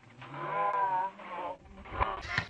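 A person's long, wavering shout, followed by a shorter, fainter vocal sound.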